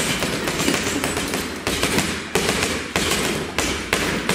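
Boxing gloves hitting a heavy punch bag, a run of repeated thuds with sharp starts.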